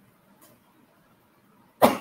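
A woman coughs once, short and sharp, near the end of an otherwise quiet stretch.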